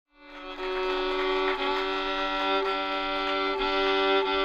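Fiddle bowing a long held two-note chord on its low strings, fading in at the start, with small breaks at bow changes about once a second.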